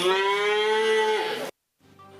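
A calf mooing: one long call that rises slightly in pitch, then dips and cuts off suddenly about one and a half seconds in.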